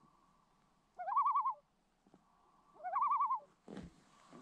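A common loon giving two quavering tremolo calls about two seconds apart, each a short rising note followed by a rapid warble; the tremolo is the loon's alarm call, given when it is disturbed. A paddle stroke splashes in the water near the end.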